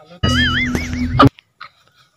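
A short edited-in sound effect of about a second: a quickly wavering, warbling tone over a steady low drone, cutting off abruptly.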